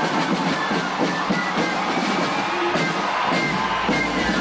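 Brass marching band playing, with a crowd cheering.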